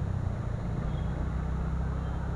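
TVS Ntorq 125 Race XP scooter's single-cylinder engine with stock exhaust, running steadily while riding at about 25 km/h, heard from the seat with road and wind noise.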